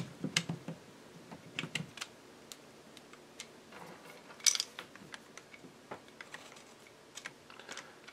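Light, irregular clicks and taps of small steel parts being handled as a 1911 pistol's barrel bushing is fitted over the barrel at the front of the slide during reassembly, with a louder cluster of clicks about four and a half seconds in.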